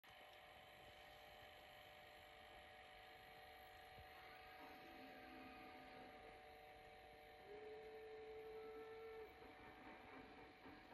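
Near silence: a faint steady electrical hum, with a faint held tone lasting about two seconds near the end.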